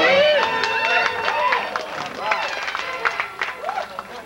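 Audience voices reacting with short rising-and-falling whoops and laughter, with scattered claps, over the routine's backing music.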